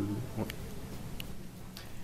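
A steady low buzzing hum with a few faint clicks.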